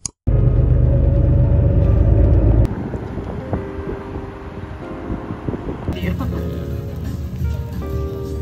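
Background music, with a loud low rumble, like road traffic, under it for the first two and a half seconds, cutting off abruptly.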